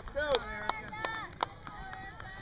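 Spectators' voices calling out, broken by a series of sharp clicks roughly every half second.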